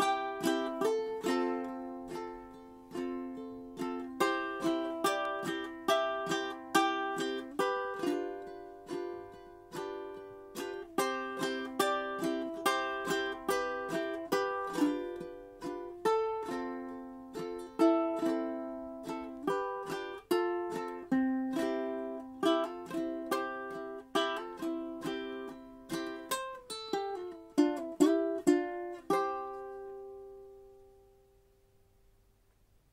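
Kanile'a KSR-ST koa super tenor ukulele being played: a flowing run of plucked notes and chords, with a quicker run near the end and a final chord left to ring and fade.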